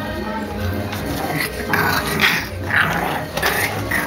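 Puppies growling at each other while eating from a shared food bowl, a series of short growls starting about a second and a half in.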